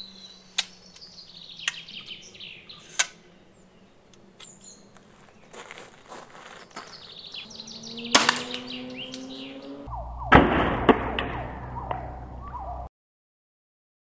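Birds chirping, then about eight seconds in the Zubin X340 compound crossbow is shot with a shot shell of lead pellets, a sharp crack. About two seconds later comes a second, louder crack within a burst of noise, and then the sound cuts off suddenly.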